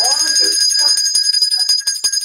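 A loud, high-pitched electronic ringing trill: several steady high tones pulsing rapidly, like a telephone ringer.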